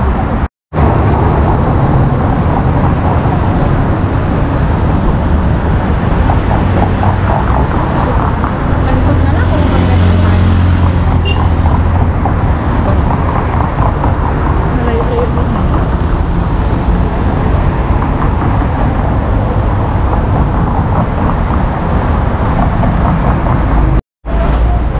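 Steady road traffic noise, with a heavier low rumble about nine to twelve seconds in. The sound breaks off for an instant just under a second in.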